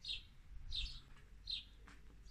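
A bird calling faintly outdoors, three short high chirps about three-quarters of a second apart.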